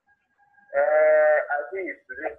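A man's voice holding one long, steady vowel for over half a second, then sliding down in pitch into brief indistinct talk.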